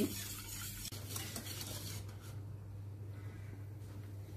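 Wire whisk stirring a milk and starch mixture in a stainless steel pot: a faint swishing with a light tap about a second in, dying away after about two seconds, over a steady low hum.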